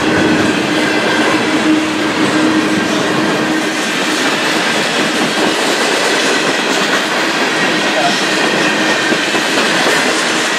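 Tank cars of a long mixed freight train rolling past at speed: a loud, steady rumble and clatter of wheels on the rails, with a faint steady tone running through it.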